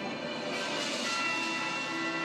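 Intro music of a channel banner video: held, ringing bell-like tones with a whooshing swell as the logo comes up.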